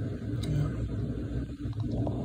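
Room tone: a steady low hum, with a faint tick about half a second in.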